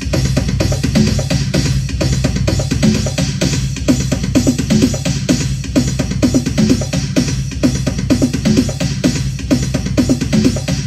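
Electronic drum-machine beat from a Roland MC-101 groovebox, with kick, snare and cymbal over a low synth bass line, repeating steadily. It is played out of broken speakers and picked up by a phone mic.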